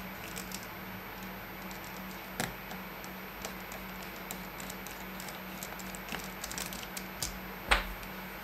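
Scattered small clicks of a precision screwdriver working the tiny Torx screws in a Fitbit Charge 3's case, over a steady low hum. A louder knock comes just before the end, as the screwdriver is set down on the mat.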